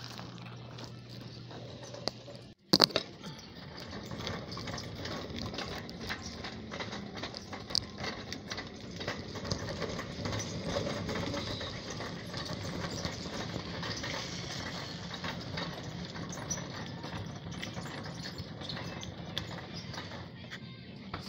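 Grocery store background noise with a steady low hum. After a brief dropout and a sharp click about three seconds in, it gives way to continuous rustling and clattering from a handheld phone being moved while its user walks the aisles.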